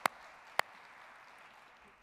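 Faint applause fading away, with two sharp clicks, the first at the start and the second about half a second later.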